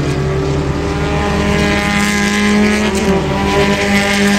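Engines of several open-wheel single-seater race cars running through a corner: a loud, mostly steady engine note that shifts slightly in pitch about three seconds in.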